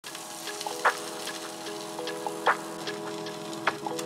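Sausage slices sizzling in oil on a griddle, a steady frying hiss. Background music plays over it, with held chords and a sharp percussive hit about every second and a half.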